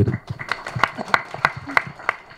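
Scattered hand claps from a few people, sparse and uneven, about three or four a second.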